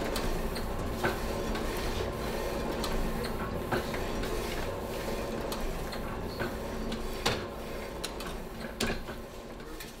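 Platen letterpress running while sheets are hand-fed. There is a steady mechanical clatter with a low hum and occasional sharp clacks, and it fades near the end.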